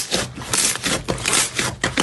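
Thick lavender crunchy slime squeezed and kneaded by hand, giving dense crackling crunches in quick repeated bursts, several a second.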